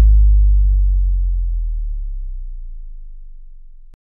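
Deep synthesized bass boom of a logo sting: a very low steady tone that fades slowly over about four seconds and cuts off at the very end.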